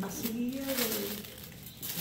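A woman's voice holding a drawn-out hesitation sound, with light crinkling underneath.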